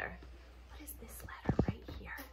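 Quiet whispering, then a few dull low thumps about one and a half seconds in: handling noise from a small handheld dry-erase whiteboard being shifted.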